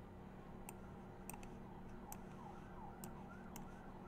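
Faint computer mouse clicks, about ten scattered sharp ticks, over a low steady electrical hum. A faint series of short rising-and-falling chirps comes and goes in the middle.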